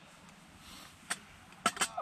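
A campfire burning: a faint hiss, with a sharp snap about a second in and two more quick snaps near the end.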